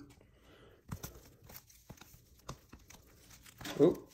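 Trading cards in clear plastic sleeves being handled and shuffled: soft plastic crinkling and rustling with a handful of short light clicks.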